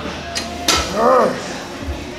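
Loaded iron plates on a leg press clinking, with two sharp metallic knocks in quick succession as the sled moves under a heavy set. A man's voice calls out briefly just after them.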